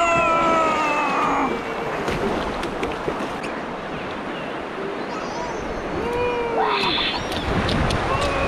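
River water rushing steadily around a floating inflatable dock, with a high voice giving a long, slightly falling call in the first second and a half and short calls again about six to seven seconds in.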